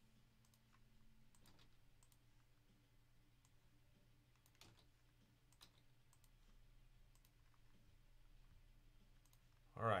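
Faint, scattered single clicks of a computer mouse, roughly one every second or so, against near silence.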